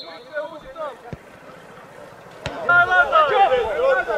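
Men's voices shouting during an outdoor football match, faint at first and loud from just under three seconds in, with a single sharp knock shortly before the shouting rises.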